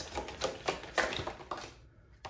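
A deck of tarot cards being shuffled by hand: a run of light card taps and slaps, about three a second, fading out near the end.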